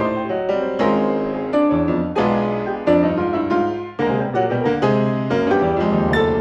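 Grand piano playing a busy passage of struck chords and running notes over a moving bass line, with strong chord attacks every half-second or so and a brief drop in level just before a loud re-entry about four seconds in.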